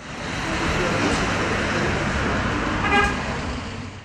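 Street traffic noise from passing cars, with a short car-horn toot about three seconds in.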